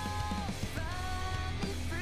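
Recorded pop-rock song playing: a female vocal line sung in harmony over guitar and bass. One held note ends and a new sung phrase begins about three-quarters of a second in.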